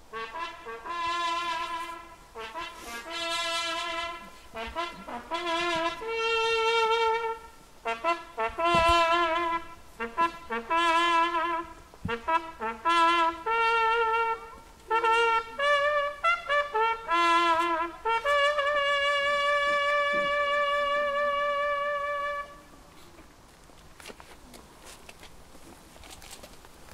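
Solo trumpet playing a slow ceremonial bugle call for the fallen: a run of separate notes with vibrato, moving between a few fixed pitches, ending in one long held note that stops about 22 seconds in.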